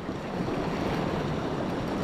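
Sea surf washing against the rocks, a steady rushing noise, with wind on the microphone.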